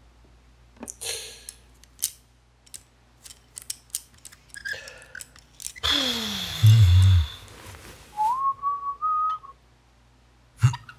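Sharp metallic clicks from a hand-worked toggle clamp over the first few seconds. Then a loud hissing sound with a steeply falling pitch, and near the end a short whistle rising in small steps.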